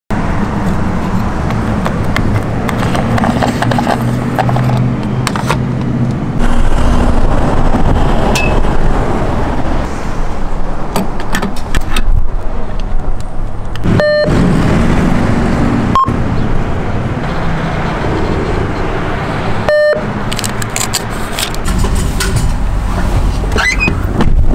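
Vehicle engine running with traffic noise around it, a steady low hum, broken twice by brief gaps, with scattered light clicks and knocks from the fuel door and pump nozzle being handled.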